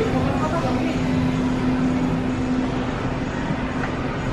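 Steady indoor hum with a constant low tone, under faint, indistinct voices.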